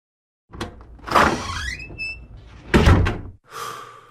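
Edited intro sound effects: a rushing whoosh whose pitch climbs to a held tone, then a heavy impact hit and a smaller second hit that rings off.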